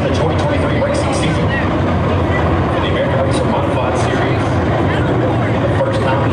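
A pack of USRA Modified dirt-track race cars racing around the oval, their V8 engines making a steady drone, with spectators talking nearby over it.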